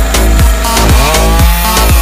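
Electronic dance music with a steady kick-drum beat about two a second, mixed over a chainsaw running on a sawhorse-mounted rig.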